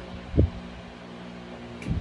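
Steady hum of a room fan, with a dull low thump about half a second in and a softer one near the end.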